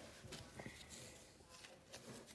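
Near silence, with a few faint soft clicks and rustles of a stack of trading cards being handled.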